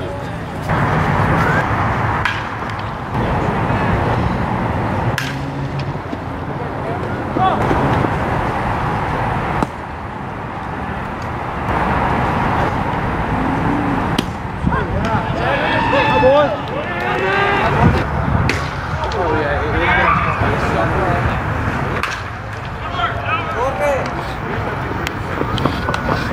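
Baseball game ambience: voices of players and spectators calling out over a steady outdoor background, with a few sharp knocks along the way.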